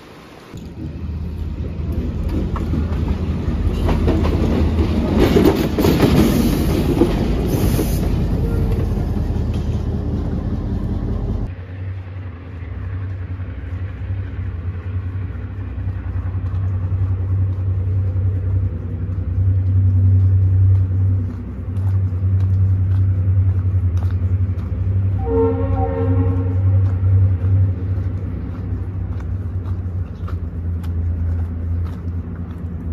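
A diesel train rumbling close by, with a horn blast lasting about two seconds near the end.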